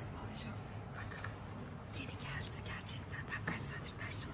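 Hushed, whispered talk close to the phone's microphone, with a low steady hum of the room beneath.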